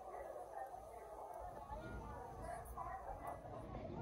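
Indistinct background chatter of people's voices, fairly faint, over a steady low hum.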